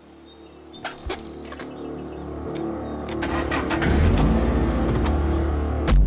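A car engine running in the cabin under music that swells steadily louder. There are two small clicks about a second in.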